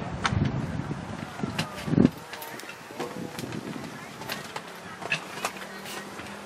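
Hoofbeats of a horse cantering on sand arena footing after landing from a fence, with a dull thump about two seconds in, the loudest sound, over a background of distant voices.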